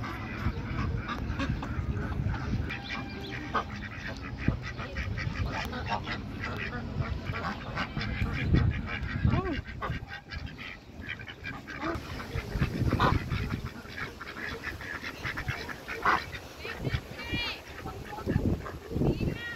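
A flock of domestic ducks quacking many times over, the calls overlapping, over a steady low rumble.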